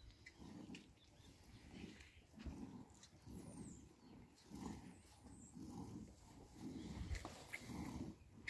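Hand milking a cow: milk squirting from the teats into a foamy plastic bucket, a faint rhythmic swish about twice a second as the hands alternate.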